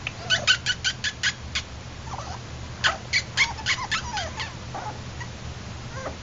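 Yorkshire Terrier puppy giving quick, high-pitched squeaky yips: a rapid run of about eight in the first second and a half, then another run about three seconds in, some of them sliding down in pitch like whimpers.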